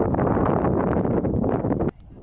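Wind buffeting an outdoor microphone: a loud, gusty rumble that cuts off suddenly near the end.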